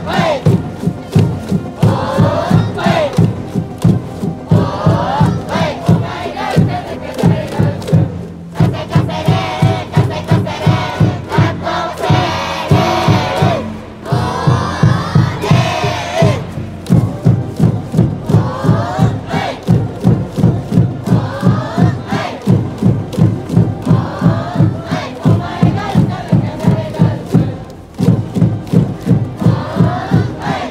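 A school cheering section at a baseball game: a band plays a fight song over a steady drumbeat while the crowd chants and shouts along in unison.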